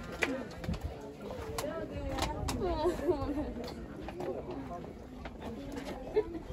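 Indistinct nearby voices mixed with bird calls, with a few sharp clicks.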